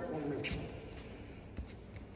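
Judogi cloth rubbing and bare feet shuffling on tatami as two judoka grip and step, with a short sharp scuff about half a second in.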